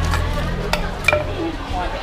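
Food being stirred in a bowl with a metal utensil: two sharp, ringing clinks close together about a second in. A low hum fades out in the first half, and market chatter runs behind.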